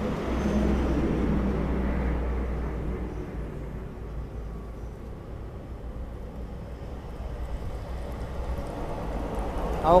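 Four-stroke motor oil being poured from a bottle into a small petrol engine's oil filler, strongest in the first few seconds, over a steady low rumble.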